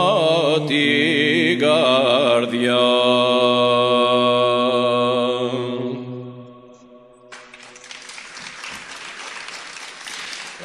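A man singing a Byzantine-style Greek folk love song, with wide vibrato and ornamented runs over a steady low drone note, closing on a long held note that fades out about six seconds in. Applause follows.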